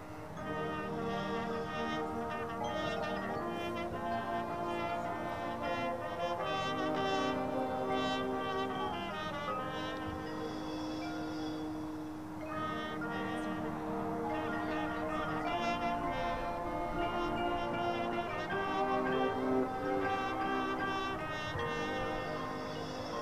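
High school marching band playing, brass to the fore. The sound thins briefly about halfway through, then the full band comes back in.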